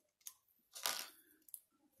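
Faint clicks and scrapes of small plastic parts as an accessory piece is worked off a plastic action figure, with a louder short rustle about a second in.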